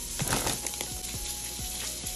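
A few light clicks and taps of hands and a knife moving sliced hard-boiled eggs onto plates of lettuce, mostly in the first half-second, over a steady hiss and faint background music.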